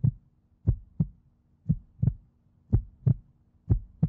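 Heartbeat sound effect: paired low thumps in a lub-dub rhythm, about one pair a second, over a faint steady low hum.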